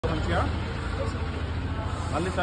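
Street traffic with a steady low engine rumble, under a few short snatches of voices.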